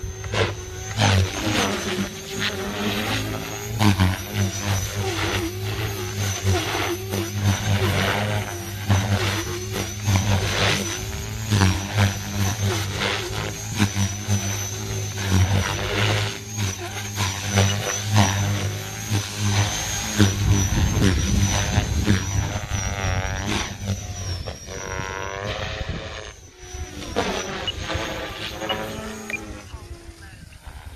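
Align T-Rex 470 electric RC helicopter flying hard aerobatics: main rotor blades whooshing and slapping under a steady high motor whine. Its loudness keeps swelling and dipping, and its pitch glides up and down near the end as it manoeuvres.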